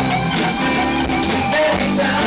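A live band playing a song, with guitar to the fore over bass.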